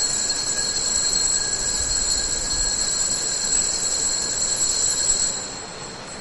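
Altar bells ringing steadily with a high, shimmering ring at the elevation of the consecrated host. The ringing fades out about five and a half seconds in.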